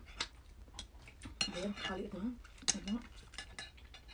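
Dishes clinking while someone eats by hand from a metal pot and a plate: a handful of sharp, scattered clicks and clinks, with chewing between them.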